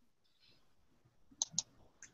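Two short, sharp clicks in quick succession about a second and a half in, against a faint quiet background.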